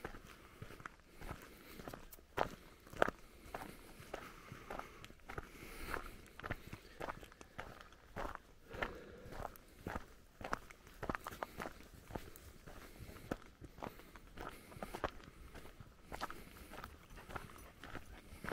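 Footsteps crunching on a stony dirt track at a steady walking pace.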